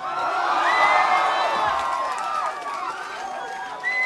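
Gig audience cheering, whooping and shouting at the end of a rock song, with a high whistle held twice, briefly near the start and again near the end.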